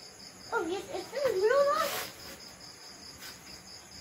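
Crickets chirping in a steady, rapid pulse throughout. From about half a second to two seconds in, a high voice makes a short rising-and-falling vocal sound, louder than the crickets.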